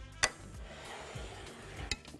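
A single sharp clink of kitchenware about a quarter second in, then a lighter clink near the end, over faint background music.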